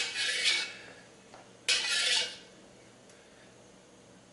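A metal wok spatula scraping twice around the inside of a round-bottom carbon steel wok, each stroke about half a second long, spreading hot oil around the pan.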